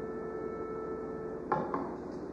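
A rest in live chamber-orchestra playing: the last chord fades into a faint steady hum, broken by one brief, sharp sound about one and a half seconds in.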